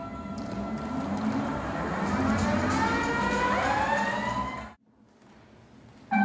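Slide whistles sliding slowly upward in pitch together over a few seconds, above a busy background noise. The sound cuts off abruptly about three-quarters of the way through.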